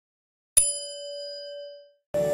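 A single bell-like notification ding, a sound effect for the subscribe bell. It strikes about half a second in, rings on as one steady tone and fades away near the end.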